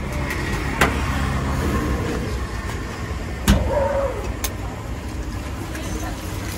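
A steady low rumble with a few sharp knocks and clicks of utensils and eggs against an iron griddle, the loudest about three and a half seconds in.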